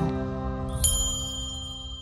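Closing notes of a gentle piano logo sting dying away, with a single bright bell struck a little under a second in, ringing on and fading out with the music.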